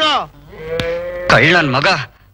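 A person's voice: one long held note about half a second in, then wavering, sing-song speech near the end.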